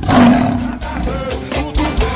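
A lion's roar comes in suddenly and loud at the start, lasting under a second. Music with a beat carries on after it.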